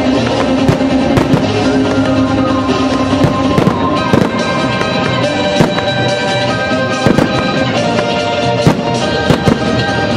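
Fireworks display: aerial shells bursting with sharp bangs at irregular intervals, over music with sustained notes.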